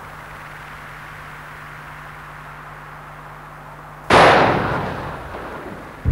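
A steady faint hiss with a low hum, then one sudden loud bang about four seconds in that dies away over a second and a half.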